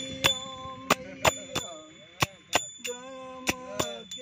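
A man singing a devotional bhajan in long held notes that bend in pitch, while a small metal bell-like percussion instrument is struck about twice a second, each strike ringing briefly.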